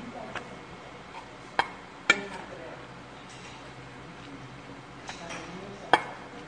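Metal spoon clinking and scraping against a stainless-steel bowl while mixing rice, with a few sharp clinks, the loudest two about a second and a half and two seconds in, and another near the end.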